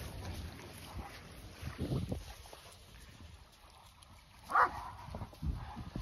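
Wind rumbling on the microphone, with one short dog bark about four and a half seconds in.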